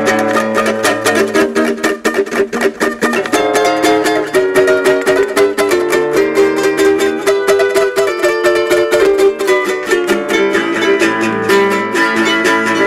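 Yamaha guitalele, a small six-string nylon-strung guitar, fingerpicked in a quick, continuous run of notes, with lower bass notes sounding under the melody now and then.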